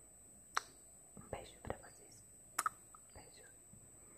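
Close-miked whispering with sharp lip-smack kiss sounds, one about half a second in and a quick double one about two and a half seconds in. A faint, steady high-pitched whine runs underneath.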